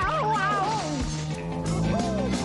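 Film score music with a cartoon voice laughing in a wavering pitch during the first second.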